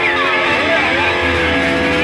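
Rock song with an electric lead guitar solo: notes bending and sliding down in pitch, then held notes from about a second in, over a bass line.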